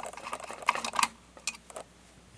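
Small, light metal clicks and ticks, a few of them at irregular intervals, from a screwdriver backing a screw out of a lock's metal housing.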